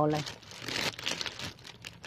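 Clear plastic sheeting crinkling and rustling in an irregular crackle, after a woman's voice finishes speaking.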